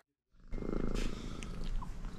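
Domestic cat purring close up, a steady pulsing rumble that starts about half a second in.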